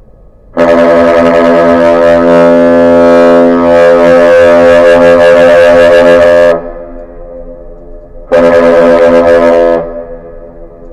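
Great Lakes salute horn sounding a long blast of about six seconds, then a short blast, part of a captain's salute (one long, two short) exchanged between a 1,000-foot freighter and the bridge.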